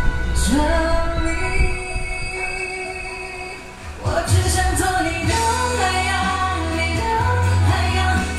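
A woman singing a pop song live into a microphone over backing music. The music dips briefly about three and a half seconds in, then comes back fuller with strong bass.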